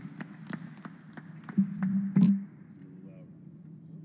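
Microphone handling noise: a scatter of small clicks and knocks as a handheld mic is taken over and settled, with a brief low voice murmur about two seconds in.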